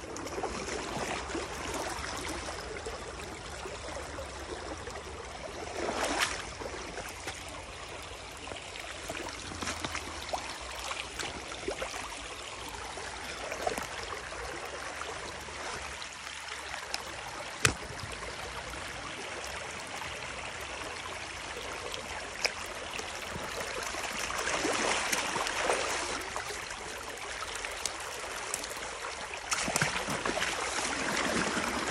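Water rushing steadily through a breach cut in a beaver dam as the pooled canal drains. It swells louder twice, and there is one sharp knock a little past halfway.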